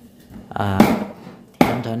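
Knife chopping on a wooden cutting board: two sharp knocks, about a second in and near the end, with a voice talking over them.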